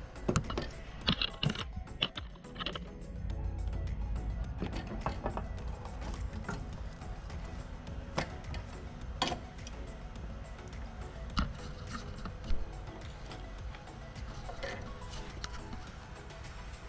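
Irregular sharp metal clicks and knocks as a snowblower's chute control rod is handled and fitted through its mounting hole, over background music.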